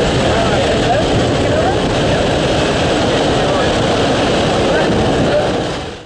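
Loud, steady rush of wind and propeller-plane engine noise through an open jump door, with voices shouting over it. The noise fades away just before the end.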